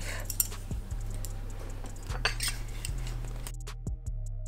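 Light metal clinks and taps as fork-style heel weights are handled and hung on a circular sock machine.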